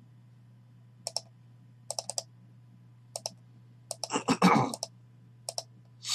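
Computer mouse and keyboard clicks, sharp and scattered, mostly in pairs and threes, over a faint steady electrical hum. About four seconds in there is a louder, longer burst of noise lasting under a second.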